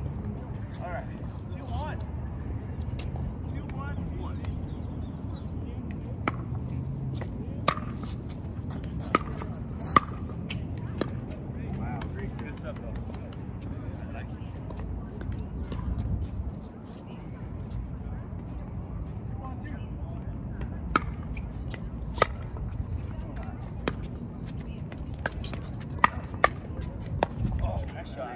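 Pickleball paddles striking a plastic pickleball: sharp, separate pops, a few spread out early and then a quicker run of hits in a rally near the end, over a low steady rumble.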